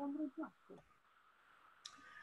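A single sharp click from the lecturer's computer, advancing the presentation slide, just before the end, after the faint tail of a man's voice; otherwise near silence.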